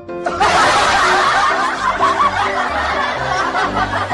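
Men laughing loudly, breaking out a moment after the start and running on, over light background music.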